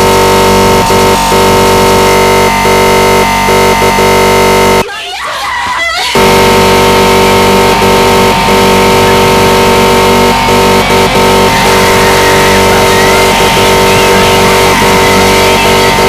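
Loud, dense, noisy electronic music: a solid wall of sustained synth tones and noise. About five seconds in it drops out for roughly a second, leaving only a wavering, gliding sound, then comes back in full.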